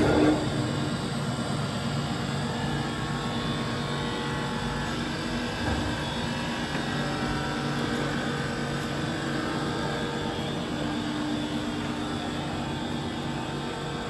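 Tacchella 1623U universal cylindrical grinder running: a steady mechanical hum with several constant tones over an even whirr. A short louder noise opens it.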